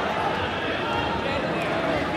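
Crowd noise in a large gymnasium: many spectators and coaches talking and calling out at once in a steady, echoing hubbub.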